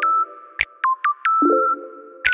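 Background music: an electronic track with plucked synth notes over held chords and a sharp percussion hit.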